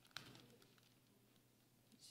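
Near silence: room tone, with a faint click of Bible pages being handled just after the start.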